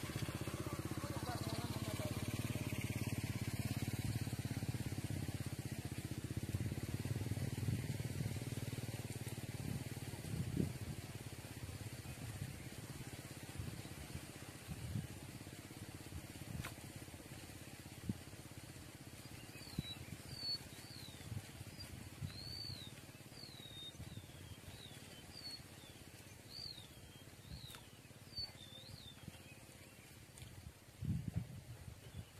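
A motor's low drone that fades out over the first ten seconds, then a small bird's repeated short, downward-sliding chirps through the later part, with scattered soft low knocks.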